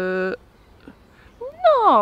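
A woman's voice making a long, flat-pitched "eee" for a puppet, which stops shortly after the start. After a pause, near the end, the voice swoops up and then slides down in pitch.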